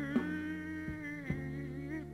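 A blues band playing live: a male singer holds one long sung note over the band, with a few sharp drum strikes under it.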